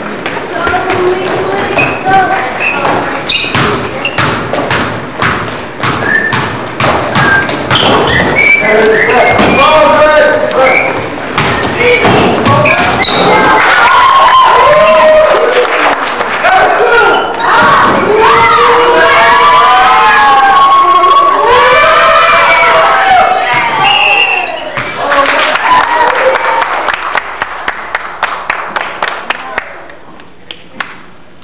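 Basketball game in a gym: the ball bouncing and thudding on the court floor under overlapping shouting and yelling from players and spectators. The yelling is loudest in the middle, and near the end there is a quick, even run of sharp knocks.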